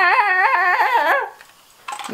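A person's high voice warbling, its pitch wavering up and down about three times a second, cutting off about a second and a quarter in; a single click follows near the end.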